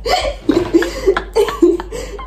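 Young women laughing hard, in short repeated bursts broken by sharp catches of breath.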